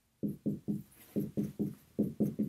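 Writing strokes knocking on a board as numbers and plus signs are written: about seven short dull taps in quick clusters of two or three.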